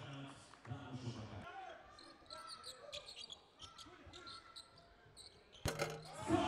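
Basketball game sounds on a hardwood court: a ball bouncing, with voices in the first second and a half and short squeaks afterwards. A sudden loud bang comes near the end.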